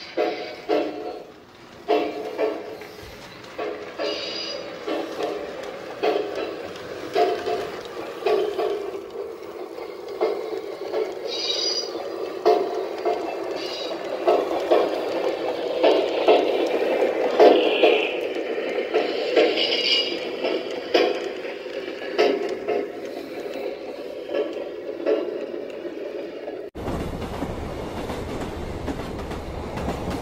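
O-scale model train running on its layout track, its wheels clicking and rattling over the rails, louder as the cars pass close. Near the end the sound cuts off abruptly to a steady hiss.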